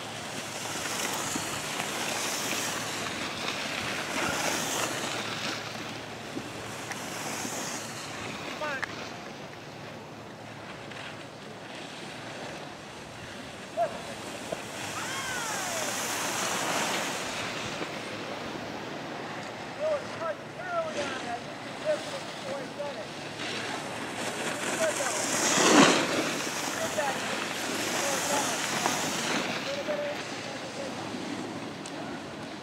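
Outdoor wind ambience: a hiss that swells and fades every few seconds, loudest about 26 seconds in, with faint distant voices and chirps underneath.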